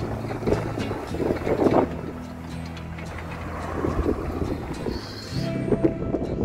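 A pickup truck driving past, with wind buffeting the microphone, under background music with held chords.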